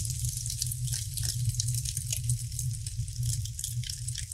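Intro sound effect under the animated logo: a steady crackling, sizzling noise of dense small clicks over a high hiss and a low hum.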